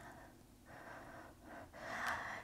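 Faint breathing: two soft breaths in the second half, held during a static push-up.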